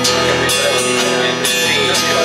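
Acoustic guitar strummed live, a few chord strokes with the chords ringing on between them.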